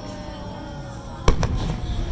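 Aerial firework shell bursting: one sharp boom a little over a second in, followed closely by a smaller crack.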